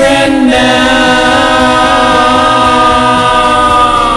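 A choir of voices singing one long held chord as part of a gospel-style song.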